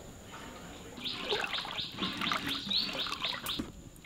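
A bird calling a rapid series of short, falling chirps, about four a second, starting about a second in and stopping shortly before the end.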